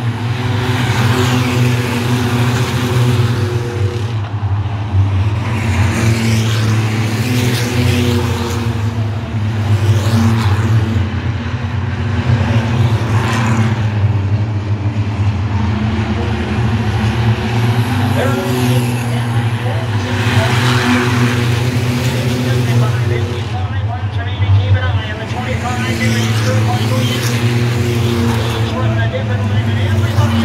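A field of short-track stock cars running laps together, their engines droning steadily. Cars repeatedly pass close by, the sound swelling and fading with each pass.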